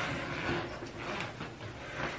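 Faint rustling with a few soft ticks: hands rummaging inside a fabric backpack packed with groceries.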